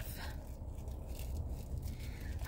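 Low, steady hum of a car idling, heard from inside the cabin, with faint rustling as crocheted fabric is handled.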